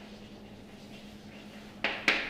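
Chalk writing on a blackboard: quiet strokes, then one short, sharp chalk stroke near the end, over a steady low electrical hum.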